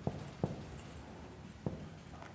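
Marker pen writing on a whiteboard: faint strokes with three short taps as letters are formed.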